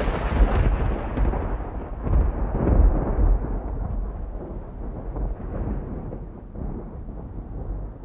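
Intro sound effect of a deep, thunder-like rumble that swells again about two to three seconds in and then slowly dies away toward the end.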